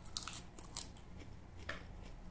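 Crisp crunching of raw leafy greens being bitten and chewed close to the microphone: a quick cluster of sharp crunches near the start, another just before a second in, and one more near the end.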